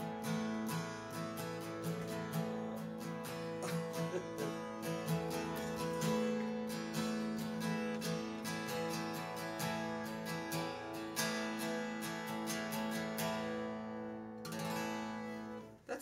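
Acoustic guitar strumming an open A2 chord over and over in a steady down-and-up pattern. Near the end the strumming stops and the chord rings briefly before it is cut off.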